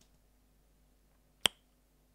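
A single short, sharp click about one and a half seconds in, otherwise near silence.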